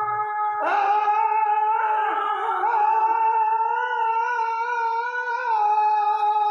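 A voice singing Sindhi devotional madah (molood), holding one long note from about half a second in until near the end, wavering slightly in pitch.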